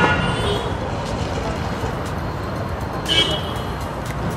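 Street traffic running steadily, with a short high-pitched vehicle horn toot about three seconds in.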